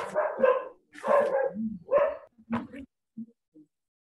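A dog barking, four short barks about a second apart, then quiet.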